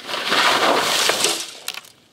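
Skis and a body skidding and scraping through wet, slushy spring snow as a skier lands off a jump and falls: a loud rush of scraping noise lasting about a second and a half, fading out.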